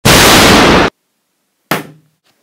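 Rocket-blast sound effect for a toy escape pod's thruster firing: a sudden, loud rush of noise lasting just under a second that cuts off abruptly, followed by a short, fainter burst near the end.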